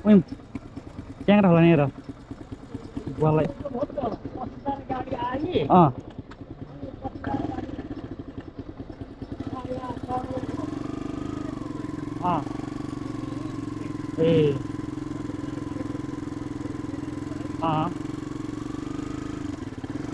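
Talk for the first few seconds, then a sport motorcycle's engine running steadily as the bike pulls away and rides at low speed, with a few short spoken words over it.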